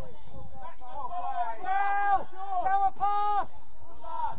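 Voices shouting across the pitch: a few drawn-out, steady-pitched calls, the longest about two seconds in and again near three seconds, over background chatter.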